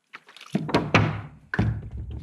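A few light clicks, then several dull thunks of a measuring cup and plastic bucket being knocked and handled as water is poured onto dry concrete mix.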